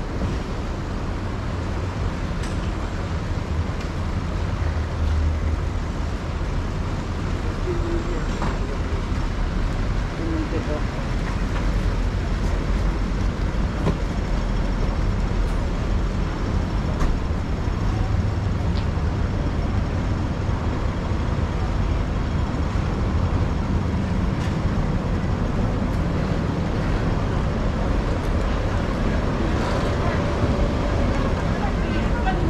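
Steady city street traffic noise: a continuous low rumble of road vehicles, with voices of passers-by mixed in.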